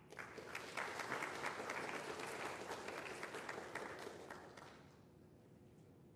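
Audience applauding, starting at once and dying away after about five seconds.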